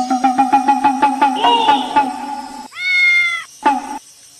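A cat meows once, a single drawn-out meow about three seconds in. Before it, a louder steady buzzing tone pulses several times a second and stops just before the meow, then sounds again briefly near the end.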